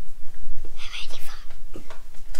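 A person whispering, with short hissy bursts about a second in.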